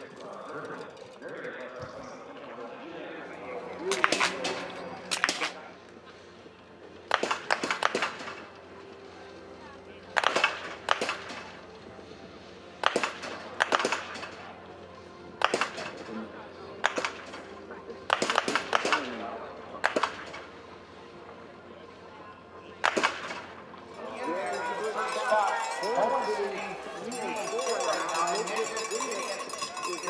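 Biathlon .22-calibre smallbore rifle shots on the shooting range: about a dozen sharp cracks over some twenty seconds, irregularly spaced and some in quick pairs, from more than one shooter. In the last few seconds the shots give way to a busier hubbub of voices.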